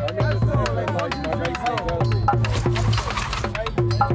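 A quick drum rhythm beaten out with drumsticks on a set of drums, a new stroke every fraction of a second, over a steady bass line in a music track.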